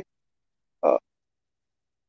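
A man's short hesitation filler, a brief 'aa' about a second in. The rest is silent.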